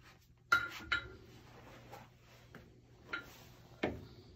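Sharp metallic clanks with a short ringing tail: two close together about half a second in, and two more near the end. A faint steady low hum runs underneath.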